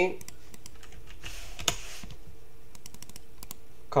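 Irregular clicks of a computer mouse and keyboard as a command is copied and pasted, with a brief hiss about a second and a half in.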